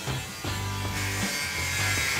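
Corded angle grinder cutting into rusted sheet metal, a high grinding whine that grows louder in the second half. Background music with steady bass notes plays underneath.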